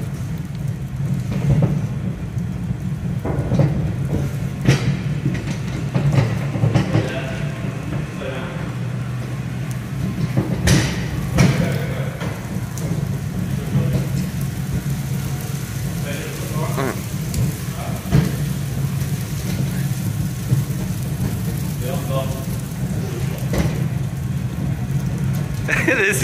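Small tow tractor driving along with a steady low hum, pulling a trailer that rattles and clatters over the floor, with scattered sharp knocks from the trailer.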